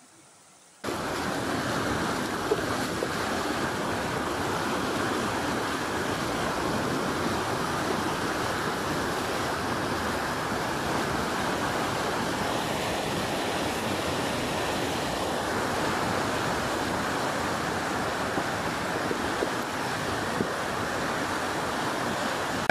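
Floodwaters of a river in spate rushing through a garden, a steady, loud roar of churning water that starts about a second in.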